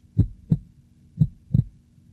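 Human heartbeat sound effect: two lub-dub beats, each a low thump followed about a third of a second later by a second thump, with a new beat about once a second. Each pair is the sound of the heart valves closing.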